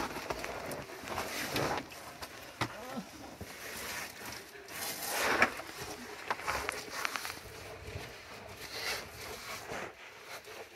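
Cavers crawling through a low, rocky crawlway: irregular scraping and shuffling of bodies, gloves and boots over gritty rock and loose stones, with small knocks of stone and gear.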